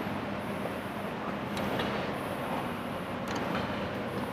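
Steady room noise of a large hall: an even hiss and low hum with no voices, broken by a few faint clicks about a second and a half in and again past three seconds.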